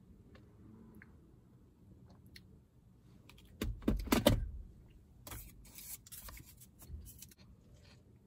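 Plastic smoothie cups being handled and swapped: a short burst of knocks and rubbing with a low thud about four seconds in, then a few seconds of light plastic clicking and crinkling.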